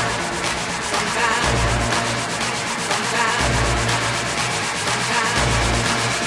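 Instrumental break of an electronic dance track: a dense, fast-pulsing hiss-like synth texture over a deep bass note that comes back about every two seconds.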